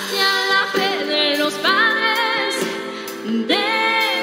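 Music: a woman singing a slow song in long held notes with vibrato, over sustained instrumental accompaniment.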